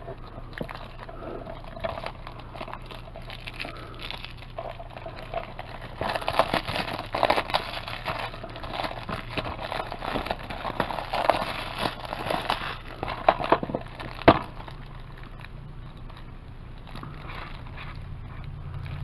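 Plastic shrink wrap crinkling and crackling as it is peeled off a DVD case, busiest through the middle, followed by a single sharp click about fourteen seconds in.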